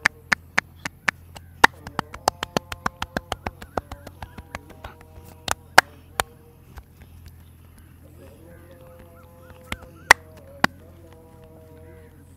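Hands striking a man's head in a percussive head massage: rapid sharp slaps, about four to six a second, for the first five seconds, then a few louder claps of the joined palms around the middle and two more near the end.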